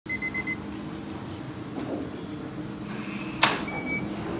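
A quick run of about five electronic beeps at the start, then a steady low hum. About three and a half seconds in, the glass entrance door gives a sharp clack as it is pulled open, and a short electronic tone sounds just after.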